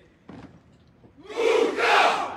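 A company of Bersaglieri soldiers shouting in unison, one loud collective cry that starts about one and a half seconds in, their answer on being named in the roll call of units.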